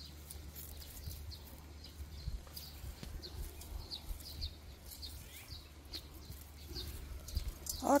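Small birds chirping in short, high, separate notes at an uneven pace, over a low steady rumble.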